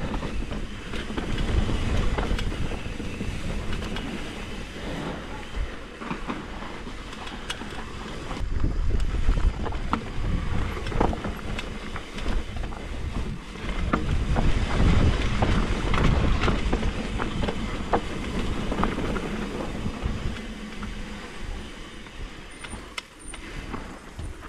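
Mountain bike descending a dirt singletrack, heard from the rider's own camera: an uneven rumble of knobby tyres over dirt and loose stones, with frequent sharp clicks and rattles as the bike jolts over rocks and roots.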